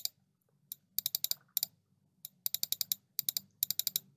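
Computer mouse button clicked in quick runs of a few to about eight clicks at a time, with short pauses between, stepping a number field down one notch per click.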